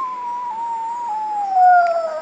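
A toddler imitating a howl: one long, high 'oooo' held on a single pitch that slowly sinks.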